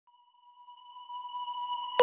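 A steady, pure high electronic tone at one pitch, with a faint higher overtone, swelling up from silence.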